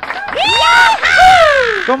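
A loud, high-pitched, drawn-out vocal call in two long notes. The first rises and holds, and the second slides down in pitch.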